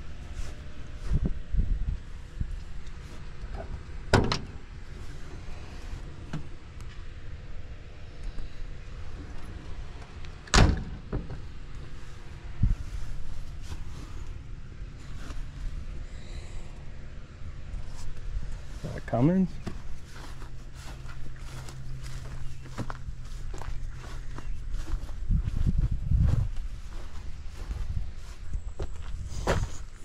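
Walking and handling noise outdoors: an irregular low rumble with two sharp knocks, about four and ten seconds in, and a steady low hum for a few seconds past the middle.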